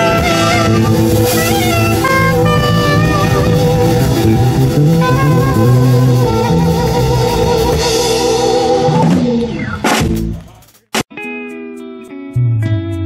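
Live jazz-reggae band playing, with saxophone melody over electric guitar, keyboard and a drum kit. The music fades out about ten seconds in. A different piece with plucked guitar notes starts near the end.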